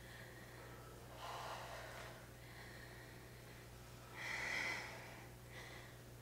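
Two heavy breaths, each about a second long, a little after the start and again about four seconds in, from a person working hard through glute bridge reps; faint, with a low steady hum beneath.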